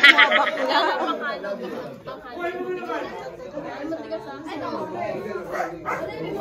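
Several people talking at once, an overlapping hubbub of casual conversation with no clear single voice.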